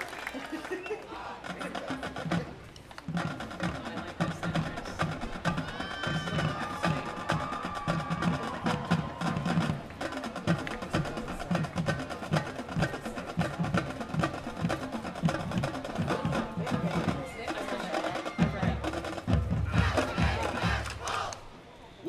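Marching band drumline playing a steady cadence, with crisp repeated strikes over regular low drum beats. Near the end a low rumble swells, then the drumming stops.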